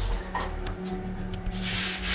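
Quiet background music with sustained low notes under a scratchy hiss that swells near the end.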